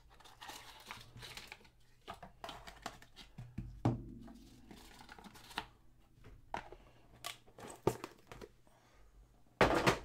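Handling of a gold cardboard trading-card box and the plastic holder inside: the lid slid off, the contents pulled out and the box set down, with rustling, scraping and scattered knocks. There is a sharper knock about four seconds in and a louder clatter just before the end.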